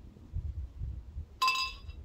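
The glass beer bottle clinks once against the tall wheat beer glass about one and a half seconds in, ringing briefly, as the pour begins. Before it there is low rumbling handling noise.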